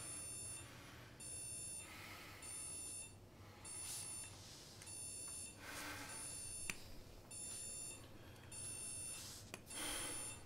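An electronic alarm beeping steadily in high-pitched pulses, each about half a second long, repeating roughly every second.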